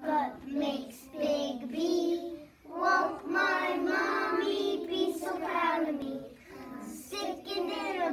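A child singing, with longer held notes through the middle.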